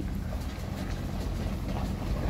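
Steady low rumble of a vehicle's engine and tyres heard from inside the cab while driving slowly.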